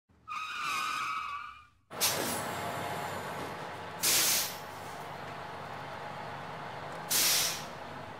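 Bus sound effects: a short high tone, then a vehicle engine running steadily, with two loud air-brake hisses about three seconds apart.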